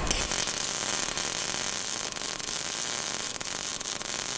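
Steady crackling hiss of an electric welding arc.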